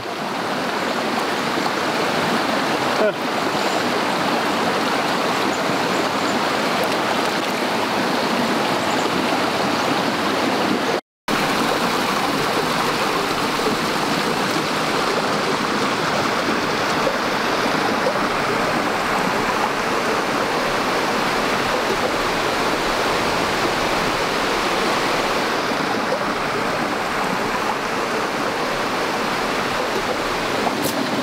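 Small rocky mountain stream running over a riffle and a short cascade: a steady rush of water. The sound cuts out completely for a split second about eleven seconds in.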